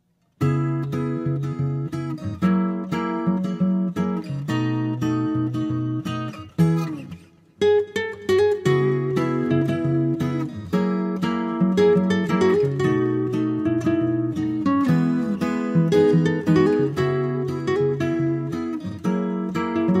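Background music played on acoustic guitar, a run of plucked and strummed notes. It starts after a brief silence and dips briefly about seven seconds in before carrying on.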